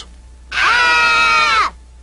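Two children's voices screaming together in one high, held scream of about a second, starting about half a second in and dipping slightly in pitch as it ends.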